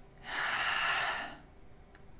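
A woman's single heavy breath, about a second long, a short way in.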